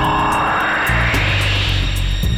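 A rising whoosh sound effect marking a scene transition, climbing steadily in pitch over about two seconds, over background music.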